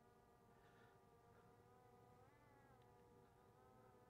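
Near silence, with a faint buzz of a distant quadcopter drone's propellers that rises and falls in pitch for a moment about halfway through as the drone descends.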